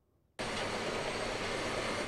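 Caterpillar bulldozer running steadily as it pushes sand, cutting in suddenly about half a second in after a brief silence.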